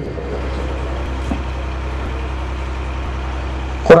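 A steady, unchanging low hum under an even hiss, with no speech over it. Near the end it is cut into by a sudden loud onset as a voice starts.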